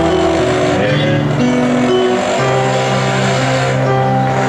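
Live worship band music with no singing: electronic keyboard holding sustained chords that change every second or so, with a low bass note entering about two and a half seconds in.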